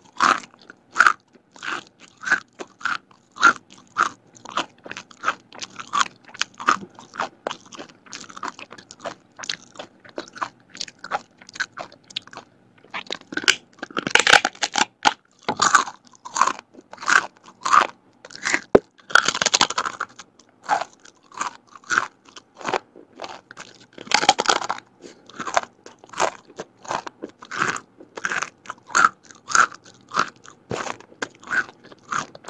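Crisp fried vegetable crackers being bitten and chewed, a steady run of crunches about two a second. A few louder, denser bites break in during the second half.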